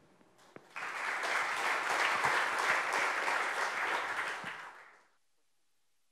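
Audience applauding. The clapping starts just under a second in, thins out, then cuts off abruptly about five seconds in.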